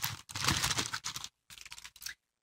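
Crinkling of a small plastic bag being handled and opened: a dense crackle for about the first second, then fainter rustling.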